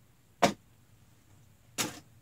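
Two sharp knocks about a second and a half apart, the first louder, from fallen fidget spinners being handled and gathered up.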